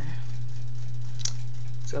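A steady low hum with one short click a little past halfway.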